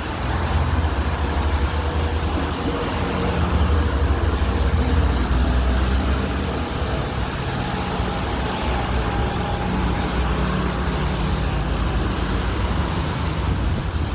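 Road traffic on a rain-wet street: cars driving past with engines running and tyre noise off the wet asphalt, a steady low rumble throughout.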